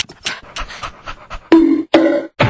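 Dog panting sound effect, rapid quick puffs used as a cartoon dog's laugh, ending about one and a half seconds in with a louder, short pitched sound.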